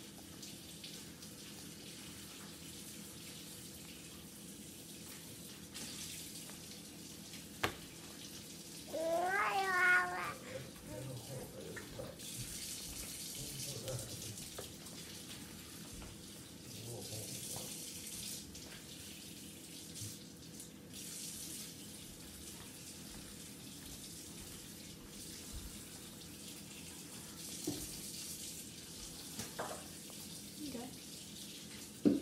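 An eight-month-old baby gives a short, high-pitched squeal about nine seconds in, the loudest sound, over a steady background hiss. A sharp click comes just before it, and a few faint babbles follow.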